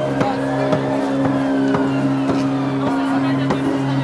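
Amplified acoustic guitar strummed through a small street amplifier, a sustained chord cut by regular strokes about two a second, with street crowd hubbub behind.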